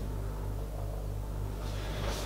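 Steady low hum with faint hiss, unchanging throughout, with no distinct events.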